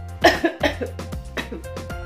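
A woman coughs twice in quick succession, about a quarter and half a second in, over background music; she is unwell.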